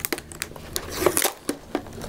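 Adhesive tape being peeled off a cardboard box: a run of small crackles and clicks, with a longer rasp about a second in.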